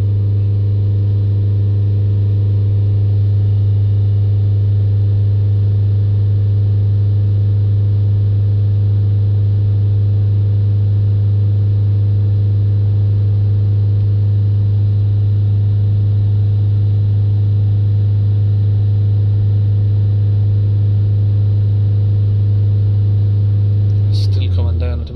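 Ford Transit four-cylinder diesel engine held at a steady high idle of about 3000 rpm, heard from inside the cab as an unchanging loud hum. The revs are held to flush DPF cleaning fluid through the blocked diesel particulate filter and bring its pressure down.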